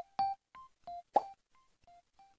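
Closing notes of a short electronic logo jingle: a run of quick, plucked keyboard-like notes, each dying away fast and growing fainter until they stop. There is one sharper click a little over a second in.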